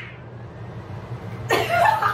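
A sudden, loud burst of laughter from a young woman, starting about one and a half seconds in after a quieter stretch.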